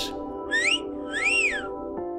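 A two-note wolf whistle, the first note sliding up and the second rising then falling, over held background music chords.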